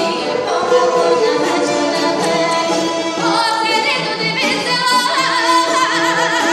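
Live Bulgarian folk song: a woman singing in full folk voice, accompanied by a folk instrumental ensemble. Near the end she holds a note with a fast wavering pitch.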